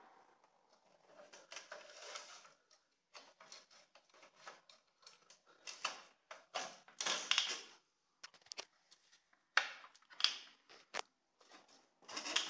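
Scattered clicks, scrapes and rustles of a cable connector being fumbled one-handed against a circuit board, without going in.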